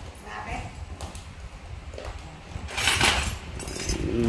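Silver bangles clinking against each other in a brief jingle about three seconds in, as one is lifted from a pile of bangles and neck rings; faint handling rumble before it.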